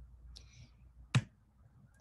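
A short faint hiss, then a single sharp click about a second in: a computer mouse or key press advancing the presentation slide.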